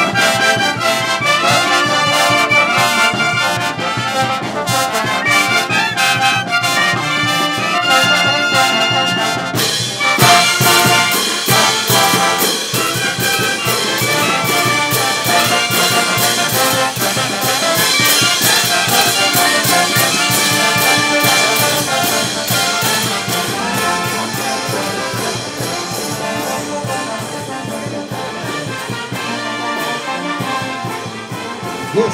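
Peruvian brass band playing live, a trombone section leading with trumpets. About ten seconds in the sound brightens as cymbals and drums beat a steady rhythm under the horns.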